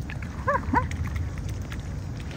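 Mute swan giving two short calls, a quarter of a second apart, about half a second in, over a steady low rumble.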